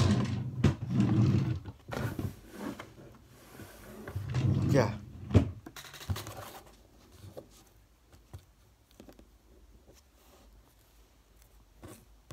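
Indistinct talking for roughly the first half, then quieter, with a few faint taps as a scratchcard is handled on a table.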